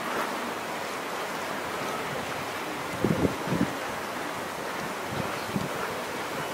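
Steady wind rushing on the camera microphone, with a few brief low buffets about three seconds in.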